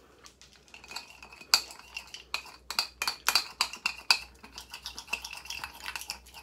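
A thick gelatin-and-milk paste being stirred in a bowl. It makes quick, irregular scrapes and clinks, about three or four a second, with a faint ringing note under them.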